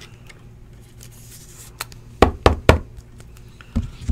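Sharp knocks of a rigid plastic top loader holding a trading card being tapped and set down on the table: three quick knocks a little past halfway, with a fainter one just before and another near the end.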